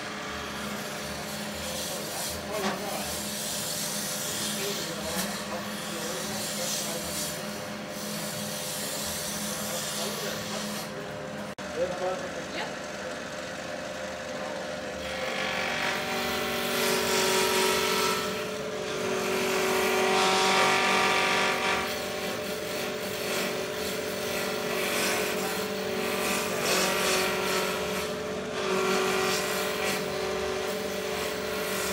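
Wood lathe running while a turning tool roughs a square wooden blank round. The motor hums steadily under the cutting noise, which grows louder in the second half.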